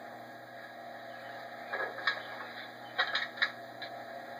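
Steady hiss from an old film soundtrack playing through a television. A few short, sharp sounds come about two seconds in, and a quick cluster about three seconds in.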